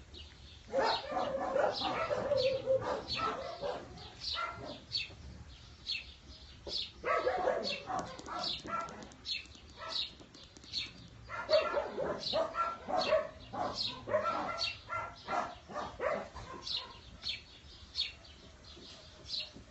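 Dogs barking in three bursts of rapid barks, about a second in, around seven seconds in, and from about eleven to fifteen seconds, with small birds chirping quickly in between.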